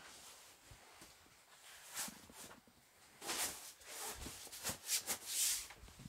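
Faint soft rustling and brushing as RV dinette back cushions are laid down over the tabletop to make a bed, a few muffled strokes mostly between about three and five and a half seconds in.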